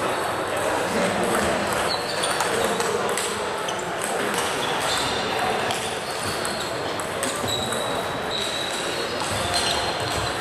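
Table tennis ball clicking back and forth off bats and table during a rally, over a steady murmur of voices in the hall.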